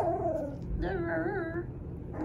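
Five-week-old puppy whining: a short falling cry at the start, then a longer wavering whine about a second in.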